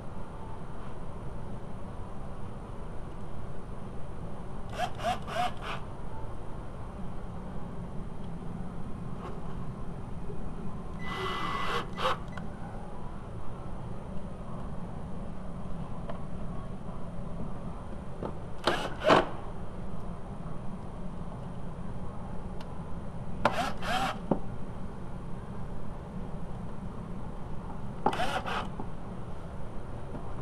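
Plastic wheel-well liner being handled and scraped as it is fitted back into place, with about five short bursts of clicking and a cordless drill driving screws into its plastic retainers, spaced several seconds apart. A steady low hum runs underneath.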